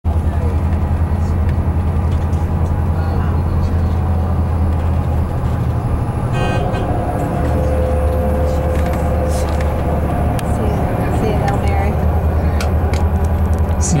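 Engine drone of a moving road vehicle heard from inside its cabin, steady and low throughout. About six seconds in there is a brief horn toot.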